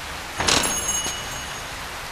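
Steady rain falling, with a brief whooshing swell of noise about half a second in.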